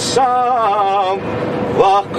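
A man singing a Bosnian folk song in a car, holding long ornamented notes with a short break a little past halfway, over the car's road noise.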